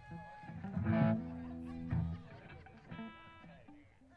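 Amplified electric guitar playing a few sustained notes through the PA, the loudest ringing out about a second in and another near three seconds.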